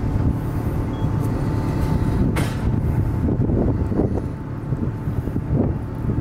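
A steady low rumble, with faint voices coming in about halfway through.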